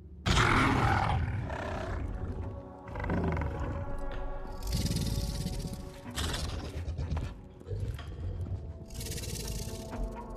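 A large fictional creature, the howler used as a mount, calling loudly as a film sound effect: a sudden call just after the start, then more calls near the middle and end, over the background score music.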